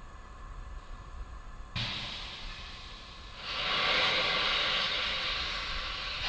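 Steady hiss of a fully fuelled Falcon 9 rocket venting liquid oxygen vapour on the pad, the boil-off of its cryogenic propellant. It is faint at first, steps up about two seconds in, and grows louder and steady about three and a half seconds in.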